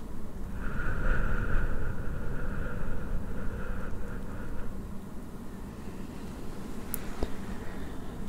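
Deep breathing close to the microphone, the breath buffeting it with a low rumble, with a softer airy tone over the first few seconds. A single small click comes near the end.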